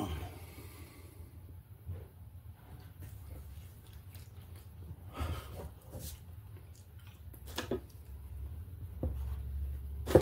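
Quiet handling noises at a table: a few scattered soft clicks and rustles from a taco and a paper napkin being handled, with a low rumble in the last second.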